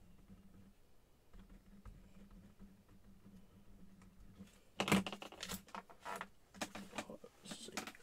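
A faint steady hum with scattered light clicks. Then, after a spoken "one" about five seconds in, a quick run of sharper taps and clicks.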